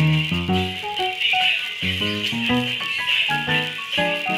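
Upbeat dance music playing: a quick melody of short, stepping notes over a steady high percussion hiss.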